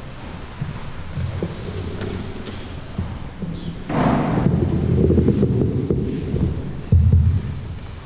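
Handling noise from a table microphone being picked up and moved on its stand: low rumbling and thumps, louder from about halfway through, with a sharp thump near the end.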